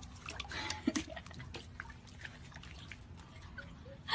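Light splashing and dripping water as a corgi puppy moves about in a shallow pond: a scatter of small drips and splashes, the loudest about a second in.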